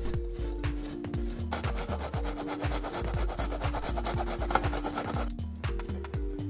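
Sausage rubbed against a metal box grater in quick rasping strokes, starting about a second and a half in and stopping near the end, over background music with a steady beat.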